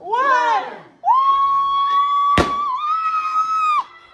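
A short whooping shout, then a long, high-pitched scream held almost steady for nearly three seconds, with the sharp pop of a party popper going off partway through.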